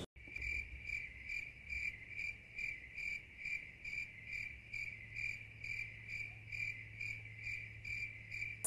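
Crickets chirping in an even, repeating rhythm, nearly three chirps a second, over a low steady hum: the comic 'crickets' sound effect laid over an awkward silence.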